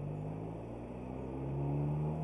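Car engine accelerating, heard from inside the cabin: a steady engine note that rises gently in pitch and gets louder toward the end.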